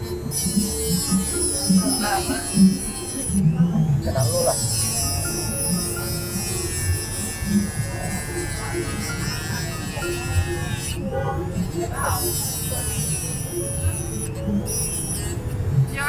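Small handheld electric rotary tool running with a high whine whose pitch wavers under load as it cuts through a metal ring stuck on a finger. It cuts out briefly two or three times.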